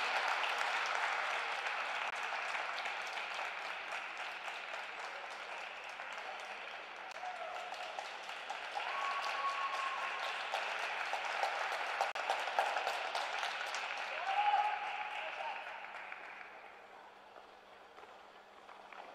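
Small audience applauding with a few calls of cheering, the claps dying away near the end.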